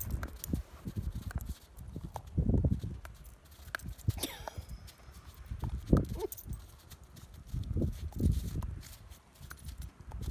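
A dog leaping and snapping at falling snowflakes: irregular heavy thumps as its paws land in the snow, mixed with sharp clicks of its jaws snapping shut.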